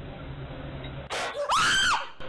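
A woman screams in fright: a sharp noisy gasp about a second in, then a loud, high scream near the end that arches up in pitch and falls back.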